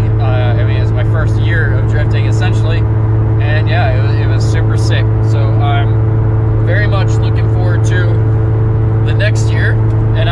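Steady drone of a car's engine and road noise heard inside the moving car's cabin, with a man's voice talking over it at several points.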